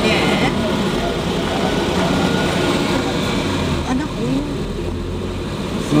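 Steady road and engine noise of a moving car, heard from inside the cabin, with faint voices from time to time.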